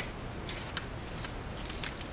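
A few faint crinkles and light rustles of a plastic snack-pie wrapper being picked up and handled, over low room noise.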